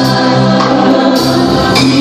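Gospel worship song: a woman sings into a handheld microphone, with other voices singing along on sustained notes.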